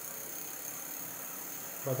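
Faint steady hiss and hum with no distinct knocks or clicks; a man's voice starts right at the end.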